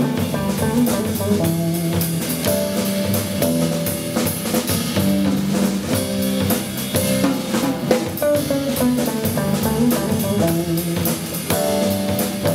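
Small jazz group playing: electric jazz guitar over a drum kit with steady cymbal strokes.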